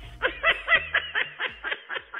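A person's voice in quick, repeated short bursts, about six a second, loudest near the start and growing fainter toward the end.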